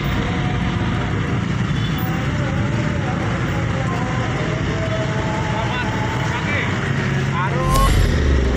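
Street traffic in a jam: car and motorcycle engines running at low speed, with voices in the background and a louder low rumble near the end.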